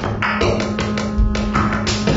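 Live electronic music: rapid clicks and taps with a couple of low thumps, and a steady low tone that comes in just after the start.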